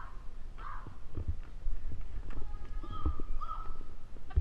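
Irregular footsteps and knocks on pavement around metal bike racks, over low rumbling wind on the microphone, with a couple of short voice sounds.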